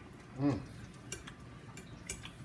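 A metal fork clinking a few times against a ceramic bowl in the second half, after a short 'mm' from a man tasting food.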